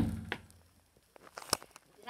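A single thump at the start with a short low hum dying away, then a few faint clicks and taps.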